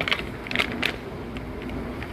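Paper packet of dry onion soup mix rustling and crinkling as it is shaken over a pan to get the last of the powder out, a few sharp crackles in the first second.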